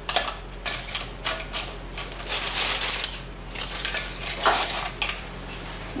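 Crisp fried tortilla chips being picked up and laid into a glass baking dish: irregular crackling rustles and light clicks against the glass.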